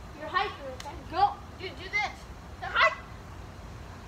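Four short vocal calls about a second apart, each with a bending pitch. The second and fourth are the loudest.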